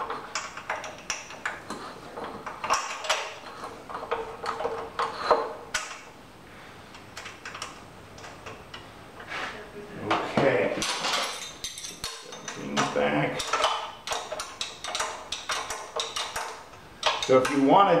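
Repeated metallic clinks and rattles of steel track parts and bolt hardware being handled and fitted onto the axle post, with the clinking busiest in the second half.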